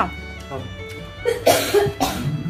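A person coughs once, sharply, about one and a half seconds in.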